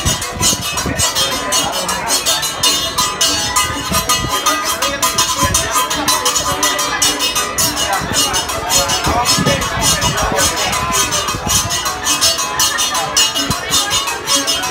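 Music with a fast, steady percussion beat and a voice over it.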